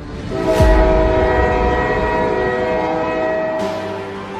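A train horn holding a chord of several notes for about three seconds, with a deep falling boom as it begins and a whoosh near the end.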